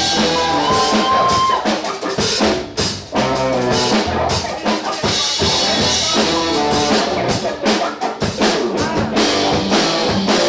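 Loud live rock band playing, the drum kit most prominent with a driving beat of snare and bass drum hits, dipping briefly a couple of times.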